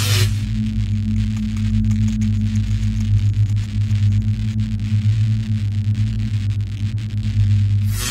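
A loud, steady low droning hum with a hiss over it, starting suddenly and holding unchanged throughout: the end-screen background sound of the video.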